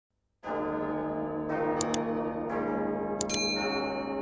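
Large church bells tolling: three heavy strokes about a second apart, each left ringing, with brief bright chimes sounding over them.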